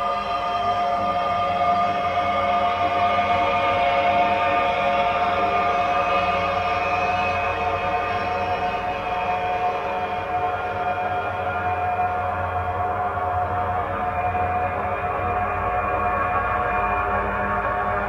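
Ambient drone music played from cassette: a dense layer of sustained tones held steady with little change in loudness. A low hum swells in the middle, and the highest tones fade out over the second half.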